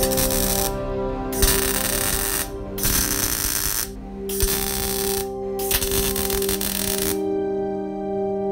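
MIG welder arc crackling in five separate runs of about a second each, as a steel end cap is welded onto a steel pipe; the crackle stops about seven seconds in. Background music with sustained tones plays underneath.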